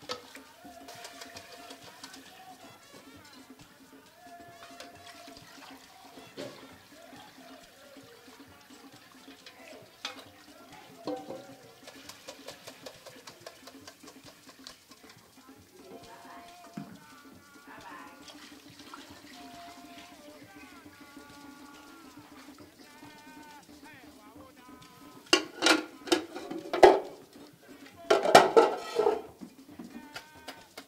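Liquid palm nut mixture poured through a colander into a cooking pot, under background music and voices. A few loud, sharp sounds come near the end.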